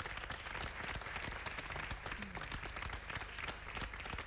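Crowd applause: many hands clapping in a dense, steady patter.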